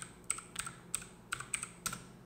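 Typing on a computer keyboard: an uneven string of single keystrokes, about seven in two seconds.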